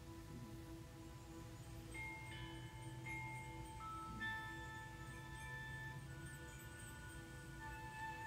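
Soft, slow zen-style background music: long, chime-like held notes that come in one after another from about two seconds in.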